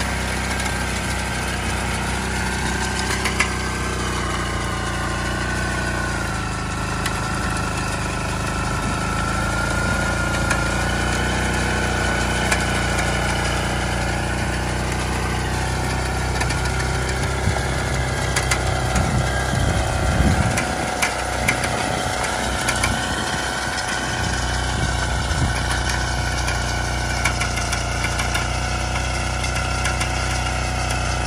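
Engine of an 8-horsepower Iseki walk-behind tiller running steadily under load while its rotary tines and bed-former work the soil, its pitch wavering slightly. A low rumble rises for a few seconds about two-thirds of the way through.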